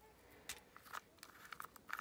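Faint rustles and a few light clicks of hands handling shredded crinkle paper and a small plastic jar of craft embellishments.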